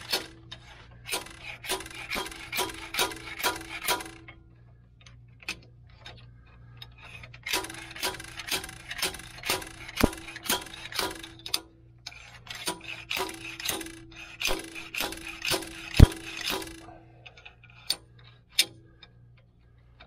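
Homemade slide-hammer bearing puller being worked on a rear axle bearing: the steel pipe slide is yanked against its stop again and again. The result is a run of sharp, ringing metal clanks about two a second, in three bursts with pauses between, one harder clank near the end. The bearing is not budging, and there is maybe not enough weight on the slide.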